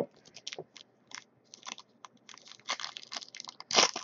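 Foil wrapper of a trading card pack being handled and torn open: scattered soft crinkles and crackles, with a louder rip near the end.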